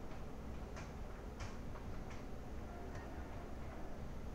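Computer keyboard keys clicking in an irregular run of single keystrokes as text is typed, over a steady low background hum and hiss.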